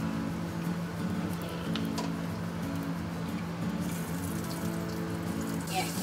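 Egg martabak frying in margarine in a wok: a steady sizzle, with a low steady hum underneath and a light tap about two seconds in.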